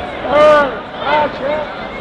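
A person's voice speaking in short phrases over steady background noise.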